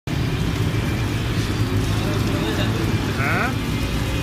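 A steady low rumble of street traffic, with egg batter sizzling on a hot flat griddle. A voice comes in briefly about three seconds in.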